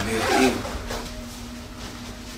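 Jacket zipper pulled open in one quick rasp in the first half-second, followed by a faint steady tone.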